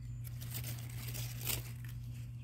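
Large Swiss chard leaves rustling and crinkling as they are handled and picked, with one sharper crackle about one and a half seconds in. A steady low hum runs underneath.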